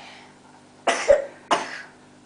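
Two short, sharp coughs, about two-thirds of a second apart.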